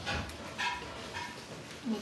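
A baby's short high-pitched squeaks, three brief ones in quick succession.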